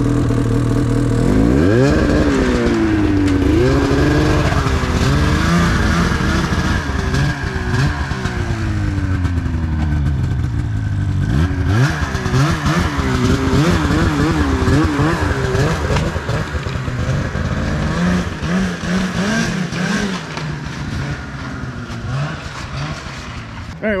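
Ski-Doo snowmobile's Rotax 700 two-stroke twin engine revving, its pitch rising sharply about a second and a half in, then climbing and falling over and over as the throttle is worked.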